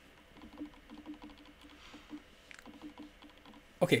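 Faint computer-keyboard typing: a run of quick, soft, irregular key clicks.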